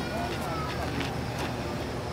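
Faint background voices of people talking at a distance, over a steady low rumble.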